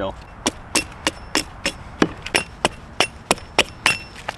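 A small axe chopping down along a split stick of dead wood, peeling away its wet outer layer to reach the dry wood inside. Quick, sharp strikes come about three a second, around a dozen in all.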